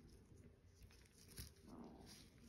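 Near silence, with a few faint clicks as gloved hands flex a heavy silver curb-link bracelet; the sharpest click comes about one and a half seconds in, and a brief faint low sound follows near the end.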